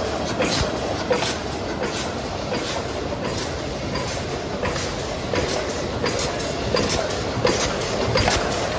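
Paper doner-box forming machine running at production speed: a steady mechanical whir with a regular clack about every two-thirds of a second as each box is formed.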